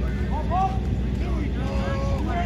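Indistinct voices of a practice-field crowd: scattered shouts and calls from spectators and players, none clear as words, over a steady low rumble.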